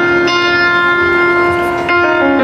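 Piano playing slow, held chords through a concert sound system. Fresh notes are struck shortly after the start and again near the end, each left ringing.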